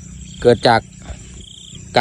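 A man speaking two short syllables in Thai, then a steady faint outdoor background with a low rumble and a thin high hum.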